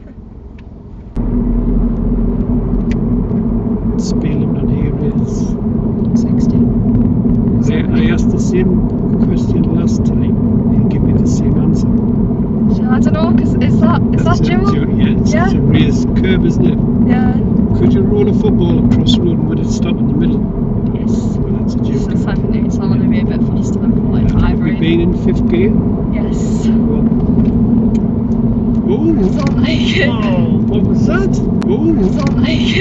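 Steady road and engine rumble heard inside a car's cabin at speed, starting abruptly about a second in.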